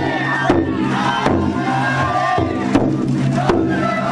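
Festival float music, with taiko drum beats about once a second and high held tones, under a crowd of pullers shouting and chanting.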